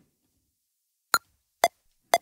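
Groove Rider 2 metronome count-in before recording: after about a second of silence, two short electronic clicks half a second apart, the first higher-pitched as the accented downbeat.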